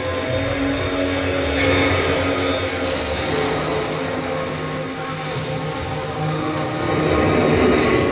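A school concert band of woodwinds, brass and percussion playing sustained chords, with a rustling noise that swells near the end.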